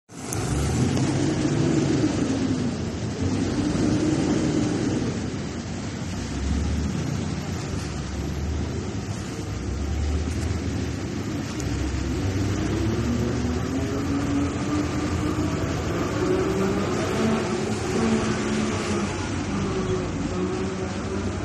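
Street traffic: motor vehicles running and passing, their engine drone swelling and fading every few seconds over a steady low rumble.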